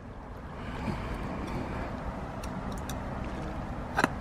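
Steady low outdoor background rumble, with a few faint clicks about halfway through.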